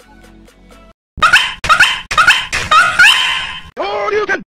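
A dog barking: five loud, quick barks about half a second apart, starting just over a second in, after faint background music cuts off.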